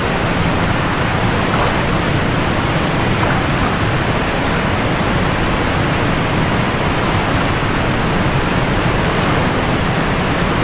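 Rushing water of a waterfall: a loud, steady rush that holds even throughout.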